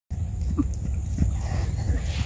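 Thoroughbred horse trotting on grass, its hooves landing as dull irregular thuds over a steady low rumble, with a brief pitched sound about half a second in.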